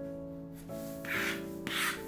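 Rotary cutter rolling through pattern paper along a ruler: two short scratchy swipes, about a second in and again just before the end. Soft piano music plays underneath.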